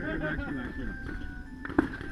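Several people talking indistinctly, with one sharp bang about three-quarters of the way in.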